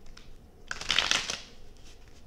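A deck of tarot cards being shuffled by hand: light card clicks, with one dense burst of riffling about a second in.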